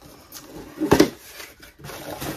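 Small cardboard box being handled and its flap opened, with faint rustling and one short knock about a second in.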